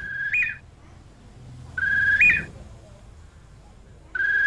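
Bird calling twice: each call a clear, level whistled note that jumps abruptly higher at its end, the two calls alike and about two seconds apart.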